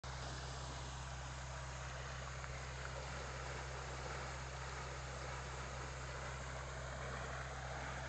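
Engine-driven water pump running at a steady drone while it floods a duck impoundment.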